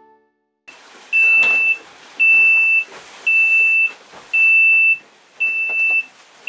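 An electronic alarm on a small racing sailboat beeps steadily. It gives long beeps at one high pitch, about one a second, five or six of them, over a background of hiss and faint knocks.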